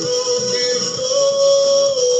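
Upbeat Brazilian piseiro song playing, with a singing voice over the beat that holds one long note in the second half.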